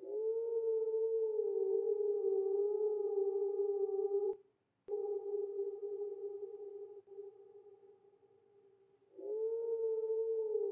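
A held electronic tone with overtones, its pitch wavering slightly. It cuts out briefly about four seconds in, fades away after about seven seconds, and starts again with a small upward swoop near the end as the clip repeats.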